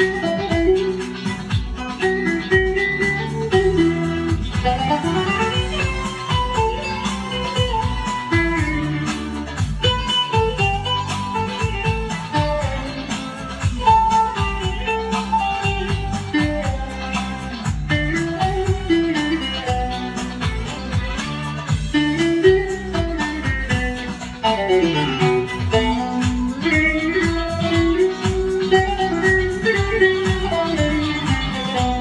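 Long-necked bağlama (saz) played instrumentally: a quick, flowing melody of plucked notes over a steady low drone.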